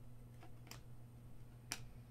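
A few faint clicks of glossy NBA Hoops Premium basketball cards being flicked and slid off one another as a stack is dealt through by hand, the clearest one near the end.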